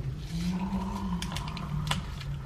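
A metal teaspoon clinking against the inside of a ceramic mug as coffee is stirred: a string of quick, irregular light taps over a low steady hum.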